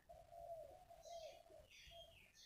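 Faint background birds: a low, wavering call runs throughout, and higher chirps join from about a second in.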